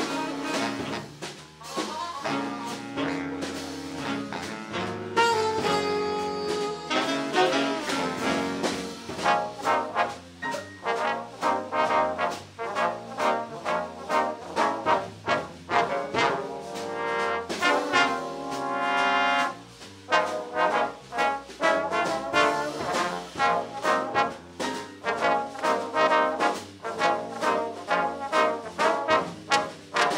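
Live big band playing a swing jazz chart that features the trombone section, with brass lines over saxophones and rhythm section. From about a third of the way in, the band plays short punchy accents on a steady beat.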